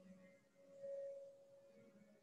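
Faint, soft background meditation music: a single held tone that swells once and then fades.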